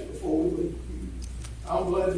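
A man's low, indistinct voice, heard in two short stretches, once early on and again near the end, over a steady low electrical hum.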